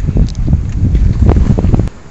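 Wind buffeting the camera's microphone: a loud, ragged low rumble that cuts off suddenly near the end.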